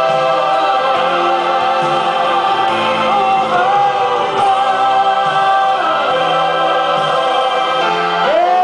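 Church choir singing a gospel song with a male soloist on a handheld microphone, holding long notes.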